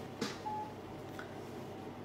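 A pause in speech with faint background hiss, a soft click, and one brief, faint electronic beep about half a second in.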